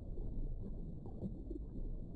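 Underwater ambience: a steady low rumble with faint bubbling gurgles.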